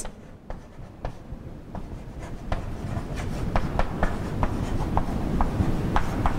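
Chalk writing on a blackboard: a run of short, irregular taps and scratches as the letters are formed, growing louder after the first couple of seconds, over a low rumble of room noise.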